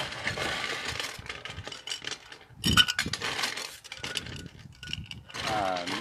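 Ice cubes rattling and clinking as they are dropped into cocktail glassware, with one sharper knock partway through.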